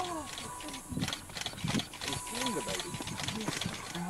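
Indistinct overlapping talk from several people, murmured rather than clear, running through the whole stretch.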